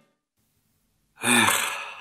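A person's loud, breathy sigh, starting about a second in and trailing off.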